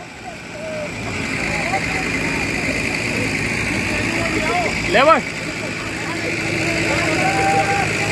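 A small hatchback's engine revving steadily, growing louder, as the car's wheels spin in deep mud while it is pushed. Men shout once about five seconds in.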